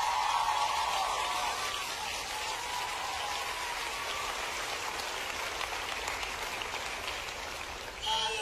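Audience applause with some cheering near the start, slowly dying down.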